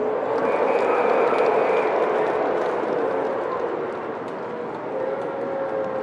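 Basketball arena crowd noise: many voices cheering and shouting, swelling sharply in the first second or so and then easing off.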